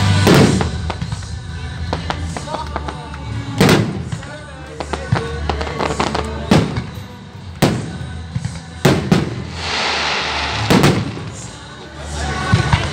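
Aerial firework shells bursting in sharp bangs, about seven at irregular intervals, with a crackling hiss of effect stars before the last big bang near the end.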